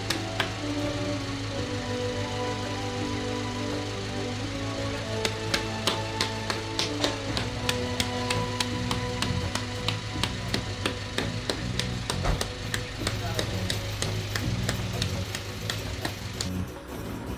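Background music with long held notes. From about five seconds in, a quick run of sharp pats joins it: hands slapping and pressing wet clay as it is shaped for a clay tannour oven.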